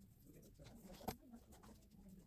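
Near silence: faint room tone, with a single soft click about a second in.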